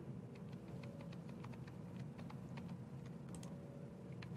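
Computer keyboard being typed on: a quick, irregular run of faint key clicks, about four or five a second.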